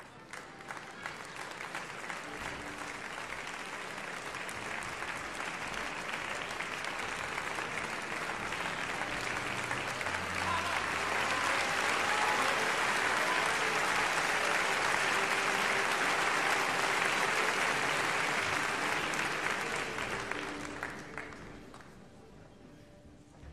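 Opera-house audience applauding the conductor's entrance into the pit before the act begins; the applause builds, peaks in the middle and dies away near the end.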